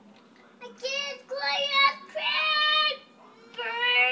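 A young child singing wordlessly in high, drawn-out notes, in several short phrases with brief pauses between, starting about half a second in.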